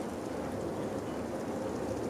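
Steady outdoor background noise: an even hiss with a faint steady hum and no distinct events.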